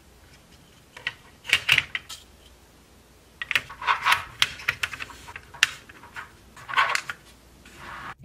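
Hollow plastic model lumber-load shell clicking and knocking against a plastic HO scale centerbeam flatcar as it is handled and fitted into the car, in four short spells of clicks and taps.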